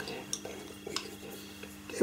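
Wooden pastel pencils clicking against one another as a handful is sorted through to pick out a colour: a few light, separate clicks.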